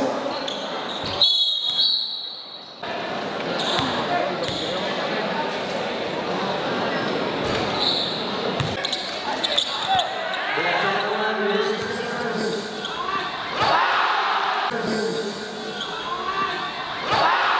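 Live game sound of a basketball game in a large gym: the ball bouncing on the court amid crowd chatter and voices, with a hall echo. A short high whistle-like tone sounds about a second in, fitting a referee's whistle for a foul before free throws.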